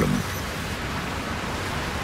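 Waterfall on a creek swollen with spring meltwater: a steady rush of falling and churning water.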